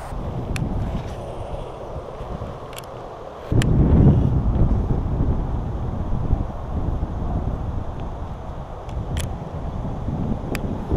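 Wind rumbling on the microphone, stronger from about three and a half seconds in, with a few faint clicks.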